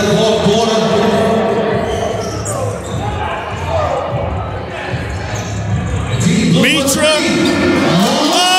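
A basketball bouncing on a hardwood gym floor as it is dribbled, under steady chatter in the echoing gym, with a few short sneaker squeaks near the end.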